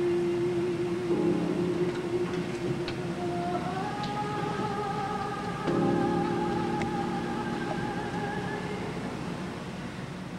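A soprano holding a long, wavering sung note, then sliding up to a higher note held for about five seconds, over piano chords struck about a second in and again midway.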